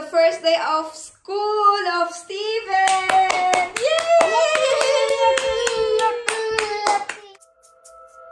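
A child's voice singing, then holding one long, slowly falling note while hands clap, about three claps a second.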